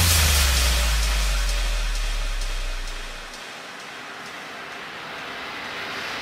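Electronic dance music breakdown: a held sub-bass note fades away over about three seconds, leaving a wash of noise with no beat that slowly swells again near the end.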